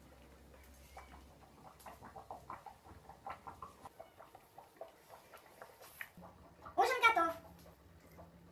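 Faint clicks and soft vocal fragments, then one short, loud vocal cry with a bending pitch about seven seconds in.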